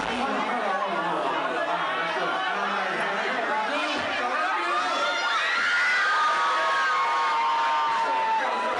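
Packed crowd cheering and shouting, many voices overlapping, with a few long drawn-out yells from about halfway through.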